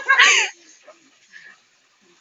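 A short, high-pitched cry of about half a second, just after the start, followed by only faint background sound.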